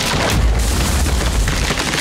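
A deep cinematic boom sound effect: a sharp hit followed by a low rumble that lasts about a second.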